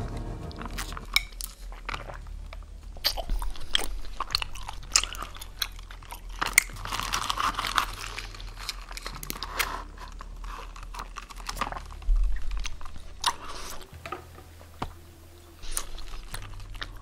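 Taro bubble tea being sucked up through a straw and the chewy tapioca pearls chewed close to the microphone, with many small wet mouth clicks.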